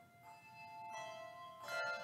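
Handbell choir playing, with notes struck one after another and left to ring over each other. Fresh strikes come about a second in and again near the end.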